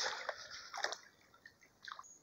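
Faint running water of a shallow creek, with two brief soft noises, one just under a second in and one near the end.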